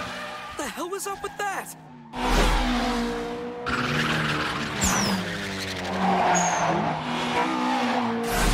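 Toyota AE86 engines running hard at high revs in a race, with short high tire squeals. The engine sound drops briefly just before two seconds in, then comes back loud and steady.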